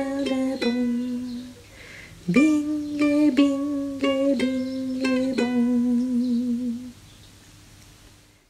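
A voice singing a short children's song tune over plucked-string strumming, in two phrases: the second opens with a rising slide about two seconds in, and the last note is held with a wavering vibrato before fading near the end.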